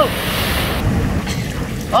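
Atlantic surf washing into a rocky tidal pool, a steady rush of water, with wind buffeting the microphone.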